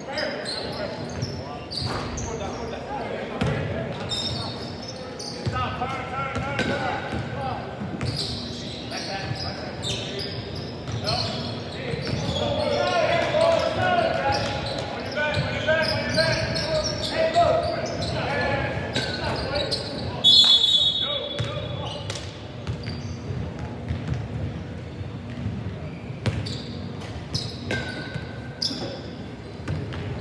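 Basketball game play in a gymnasium: a ball bouncing on the hardwood floor in repeated short thuds, under indistinct shouts and chatter from players and onlookers, echoing in the large hall.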